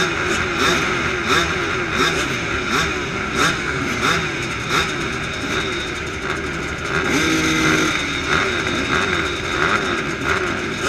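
Several small 250-class race engines idling and revving on the grid, their pitches rising and falling over one another. About seven seconds in, one engine holds a steady pitch for about a second.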